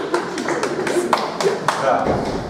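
About half a dozen sharp taps spread over two seconds, over indistinct voices in the room.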